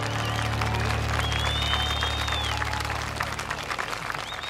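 Audience applauding at the end of a song while the last low keyboard chord rings out and fades. A long high whistle rises and falls over the clapping about a second in, and another starts near the end.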